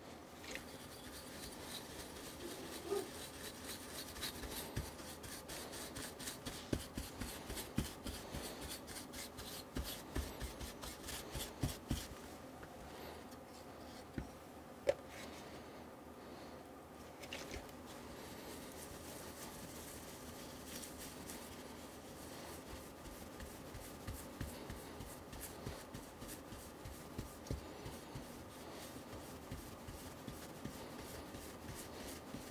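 Faint small clicks, taps and rubbing of hands handling a small circuit board and parts on a cloth mat, in irregular bursts with a quieter stretch in the middle.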